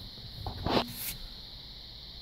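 Steady high chirring of insects, with a short soft rustle just under a second in.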